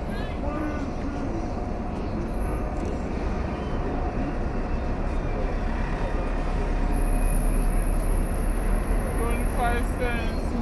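Busy city street: the low rumble of passing traffic, with a large vehicle such as a truck or bus growing louder in the second half, under the scattered chatter of passers-by.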